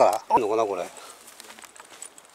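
A person's voice for about the first second, then quiet outdoor background.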